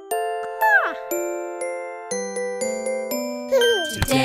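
Children's cartoon music of bell-like chime notes struck one after another, each ringing out and fading. A quick falling glide sound effect comes about a second in and another near the end, and lower notes join about halfway through.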